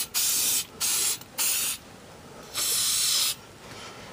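Aerosol can of rust-destroying spray hissing in four short bursts of spraying, the last one the longest after a pause of about a second.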